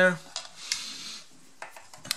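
Light clicks and a brief scraping rub as wire spade connectors are handled and pushed onto the terminals of a vacuum's universal motor.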